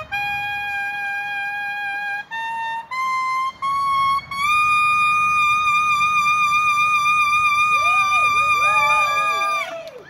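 Solo saxophone playing a slow melody in long held notes that climb step by step to a high note held for about five seconds with vibrato, which breaks off just before the end.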